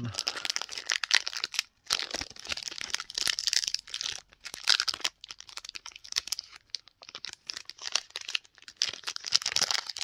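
Foil wrapper of a Pokémon booster pack crinkling and tearing as it is worked open by hand, a dense run of crackles with a few brief pauses.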